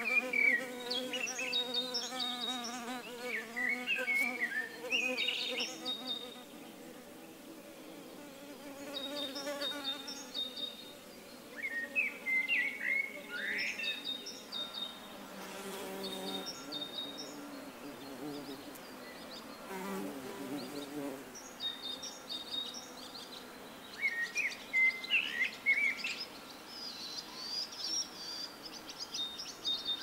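A bumblebee buzzing in flight, its hum wavering in pitch through the first ten seconds and coming back briefly twice later. Small birds chirp in short clusters throughout.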